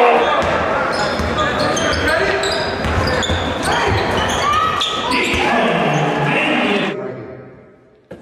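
Live game sound from a high school basketball game in a large gym: crowd voices, a basketball bouncing on the hardwood and short high-pitched sneaker squeaks. The sound fades out in the last second.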